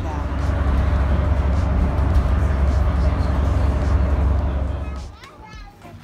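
Steady low rumble of a moving bus heard inside its cabin, cutting off about five seconds in; children's voices follow near the end.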